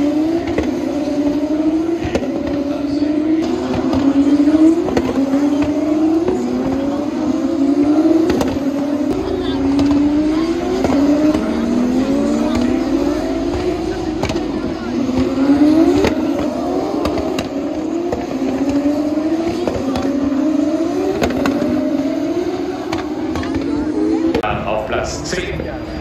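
Formula 1 cars' turbocharged V6 engines accelerating past in a stream. Each engine's pitch climbs and then drops back at an upshift, roughly once a second.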